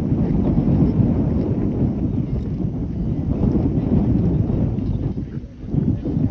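Wind buffeting the microphone: a loud, uneven low rumble that eases briefly near the end.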